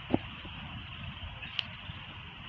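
A single short thud just after the start as a sparring partner is taken down to the ground, then a steady low rumble and hiss of outdoor background noise, with one faint click about one and a half seconds in.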